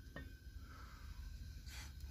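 Quiet: a faint click as the aluminium casserole lid is lifted off the pot, over a faint steady hiss from a butane camp stove burning on low.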